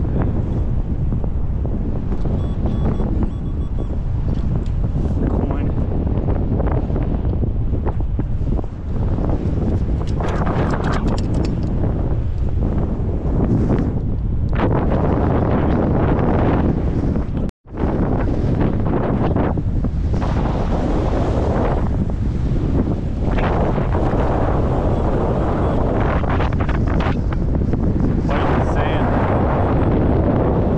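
Strong wind buffeting the microphone: a loud, steady, rumbling wind noise with no let-up, broken only by a momentary cutout a little past halfway.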